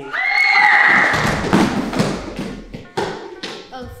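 A sudden high-pitched shriek, held for about a second, followed by a clatter of thuds and knocks over a low rumble.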